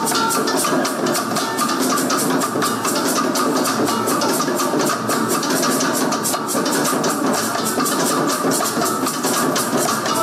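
Live traditional drumming by a dancing troupe: hand drums struck in a steady, fast, even beat over a dense layer of other music.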